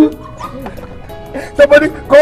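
Voices hailing over background music: quieter for the first second and a half, then two short loud cries near the end.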